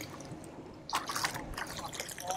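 Seawater splashing and dripping as a fish is swished in the sea at a boat's side to wash the blood out, with a brief splash about a second in.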